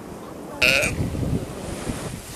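Galapagos sea lion calling: one loud call a little over half a second in, trailing off lower over the next second.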